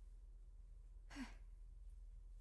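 Near silence, broken about a second in by one short breathy exhale, like a sigh.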